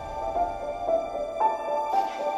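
Background music: a gentle, slow melody of clear notes, about two a second.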